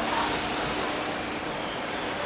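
Steady outdoor background hiss with no distinct events.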